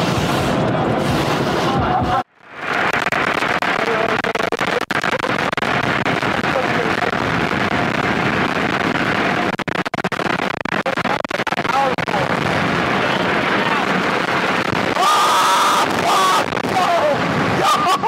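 Automatic car wash running around the car, heard from inside the cabin: a steady loud rush of water spray and machinery. It breaks off for an instant about two seconds in, then carries on.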